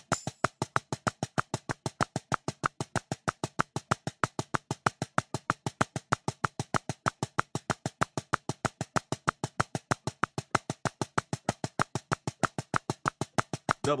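Steady practice click track at 190 BPM, sharp even ticks at about six a second, eighth notes, with no break.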